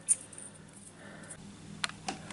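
Small plastic and metal clicks as a MIDI tester's 5-pin DIN plug is handled and pushed onto a MIDI connector. The sharpest click comes just after the start and a lighter one near the end.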